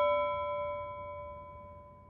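A single bell-like chime note ringing out and slowly fading away.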